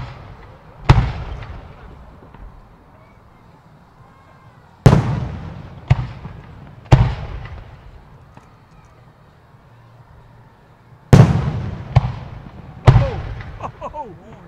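Aerial fireworks bursting: eight sharp bangs in three groups (two, then three, then three), about a second apart within each group, each trailing off in a rolling echo.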